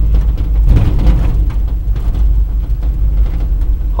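1971 Chevrolet pickup's big-block V8 running as the truck drives slowly, a steady low rumble heard from inside the cab, swelling briefly about a second in.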